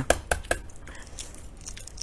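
Crackling clicks of a century egg's shell being cracked and peeled by hand: a few sharp clicks in the first half second, then fainter crackling.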